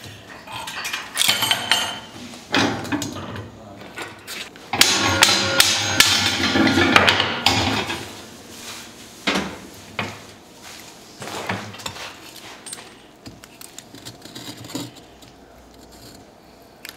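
Knocks, clanks and scrapes of a crucible and iron tools being handled, the crucible set down into a furnace. A dense run of clatter about five to seven and a half seconds in is the loudest part, with single knocks scattered after it.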